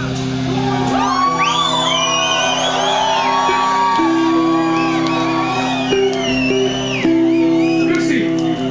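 Live rock band holding a sustained chord while the audience whoops and shouts over it.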